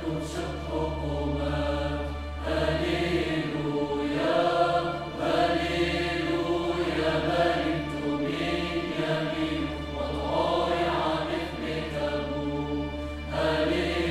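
Mixed choir singing sustained phrases with a symphony orchestra, the phrases swelling and easing every couple of seconds over a low steady drone.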